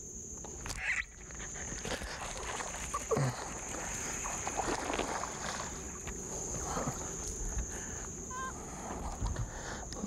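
Steady high-pitched drone of insects, with irregular rustling, knocking and water noise as a small bass is reeled in and brought aboard a bass boat.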